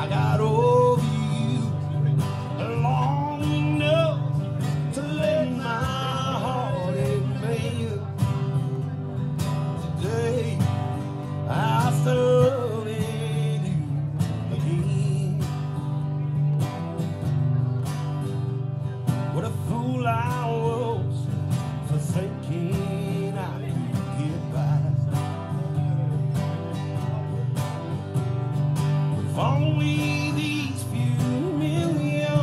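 Two acoustic guitars strummed together in a live song, with a man singing phrases over them and guitar-only stretches between the lines.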